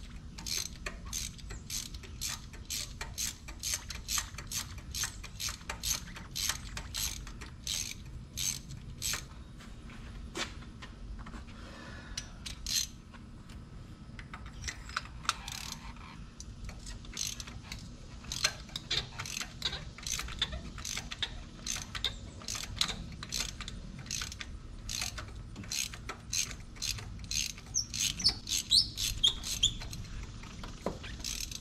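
Ratchet wrench clicking in a steady run, about two or three clicks a second, as spark plugs are backed out; it pauses for a few seconds midway and the clicks come faster near the end.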